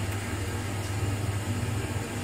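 Worcester 24i RSF combi boiler running at full fire, its burner at maximum gas pressure while hot water is drawn: a steady low hum with a faint hiss.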